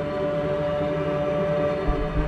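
Dark ambient instrumental music: several droning tones held steady and layered over one another. A low boom comes in just before the end.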